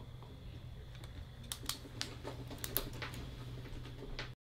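Pens writing on paper on a table: a run of short, irregular scratches and taps starting about a second and a half in, over a steady low room hum.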